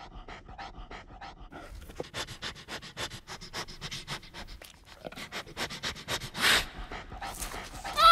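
A bear sniffing rapidly at close range: quick short sniffs, a few a second at first and faster after about a second and a half, with one longer, louder breath about six and a half seconds in.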